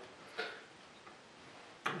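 A glass beer bottle set down on a hard surface: one short, soft knock about half a second in, then low room noise and a sharp little click just before the end.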